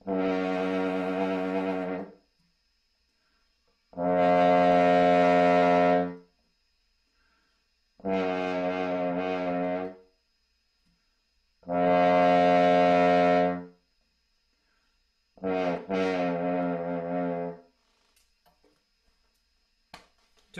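French horn playing five two-second phrases with short silences between them, the second and fourth louder than the others. The pitch wavers within each phrase as the notes are bent with the lips.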